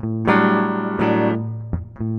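Electric guitar strummed: one chord about a quarter second in and another about a second in, each left to ring and fade, then a light pluck near the end. A steady low hum runs underneath.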